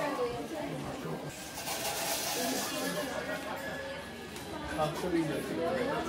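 Indistinct chatter of several people in a busy indoor shop, with a brief hiss about a second and a half in.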